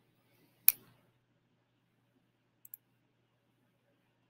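A single sharp computer mouse click about three-quarters of a second in, followed about two seconds later by a faint double tick.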